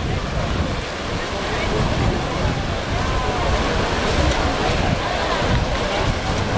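Swimmers splashing hard in a freestyle sprint, with wind buffeting the microphone and a hubbub of voices around the pool.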